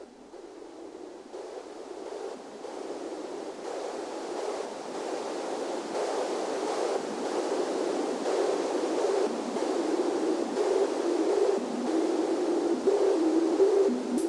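Korg Electribe 2 synthesizer sounding a rushing band of noise that grows steadily louder throughout, with a low held tone coming through in the last few seconds: the build-up intro of an electronic track.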